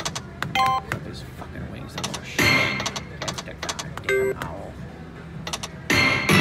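Video slot machine's game sounds: a quick run of clicks as the reels spin, with a short electronic chime about a second in and another about four seconds in.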